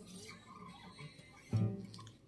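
Nylon-string classical guitar played softly, a few faint notes ringing, then a louder chord about a second and a half in.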